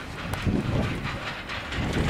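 A train running on the tracks: a noisy rail rumble that swells about half a second in and again near the end.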